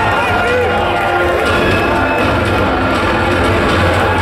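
Loud music over a PA with a steady low bass, with a crowd cheering and shouting over it.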